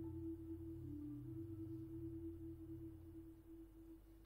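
A single sustained, bell-like tone from tuned percussion, held and slowly fading, with a brief lower note about a second in. A soft low hum sits underneath.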